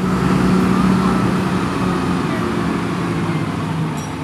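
Tractor engine running steadily as it tows a trailer along the road, a low engine hum with road noise.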